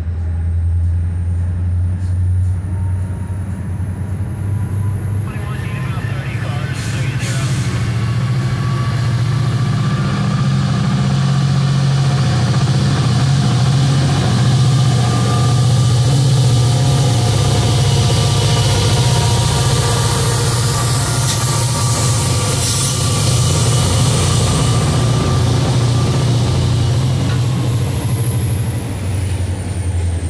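Norfolk Southern EMD SD40-2 diesel-electric locomotives pulling a train past at close range. The engines' deep drone grows louder and rises in pitch as the units come by, with a high whine over it that climbs and falls away near the end as the hopper cars follow.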